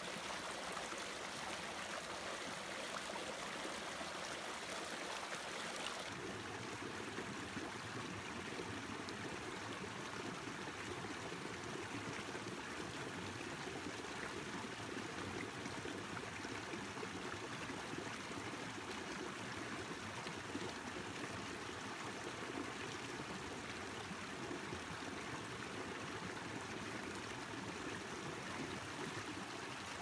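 A small snowmelt-fed mountain brook running steadily over rocks and little cascades, a continuous rush and splash of water. About six seconds in the sound shifts to a fuller, deeper rush.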